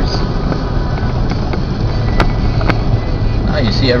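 Car cabin road noise while driving: engine and tyres running with a steady low rumble, with two short sharp clicks about two seconds in.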